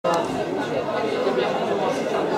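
Many people talking at once in a steady hubbub of crowd chatter, with no one voice standing out.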